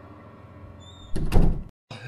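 A door slamming shut, laid in as a sound effect: one loud, heavy thud a little over a second in, over a faint steady background, cut off abruptly just after.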